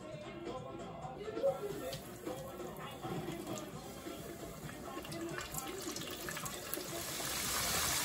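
Chicken pieces frying in a pot of hot oil: a faint sizzle that swells into a steady, louder hiss over the last second or two. Soft background music plays throughout.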